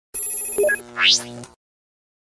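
Electronic TV-channel logo sting: a bright, ringing electronic chime, then a rising swoosh about a second in that is the loudest part, with a low tone under it that stops about a second and a half in.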